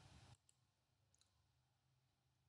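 Near silence: room tone, with a faint hiss that cuts off about a third of a second in and a few very faint clicks.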